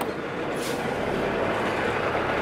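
Steady engine and road noise from a tractor-trailer truck heard from right beside its cab, with a short hiss about half a second in.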